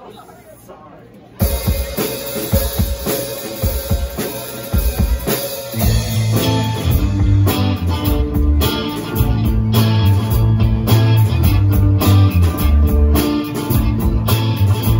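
A live rock band starting a song: electric guitar and drum kit come in suddenly about a second and a half in, and the sound fills out with heavy, sustained low notes about six seconds in as the full band plays.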